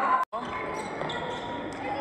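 A basketball dribbling on a hardwood gym court amid the hall's crowd noise, after a brief dropout to silence about a quarter second in.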